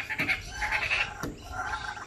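Laughing kookaburras calling to each other: a fast chattering run of repeated notes for about the first second, then lower, slower notes.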